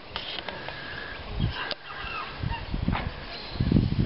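Farm poultry calling in the background, faint short honks and squawks, over irregular low rumbling on the microphone that grows loudest near the end.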